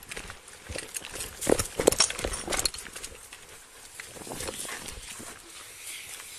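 Police K-9 dog breathing and moving close to the body camera, loudest in a short cluster of sounds about one and a half to two and a half seconds in.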